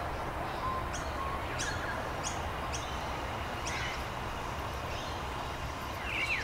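Small birds giving short, high, downward-sweeping chirps every second or so over a steady low outdoor rumble.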